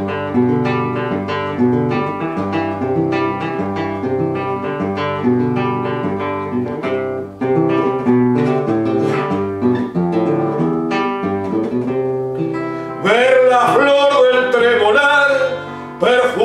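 Nylon-string classical guitar playing a milonga interlude: a plucked melody over a steady bass line. About thirteen seconds in, a man's voice comes in singing over the guitar, louder than it.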